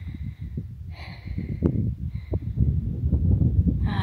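Wind rumbling on the microphone, with three faint brief high calls in the background. No distant boom stands out.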